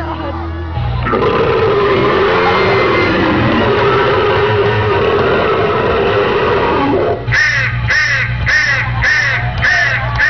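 The performance's loud backing track, mixed with horror sound effects: a dense, noisy stretch, then from about seven seconds in a quick run of crow caws, two to three a second.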